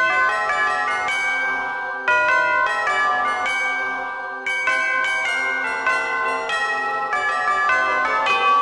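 Instrumental music: a melody of ringing bell chimes, notes struck in quick succession and overlapping as they ring on.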